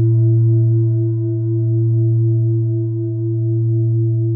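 A held low droning tone with fainter higher overtones, its loudness swelling and easing slowly.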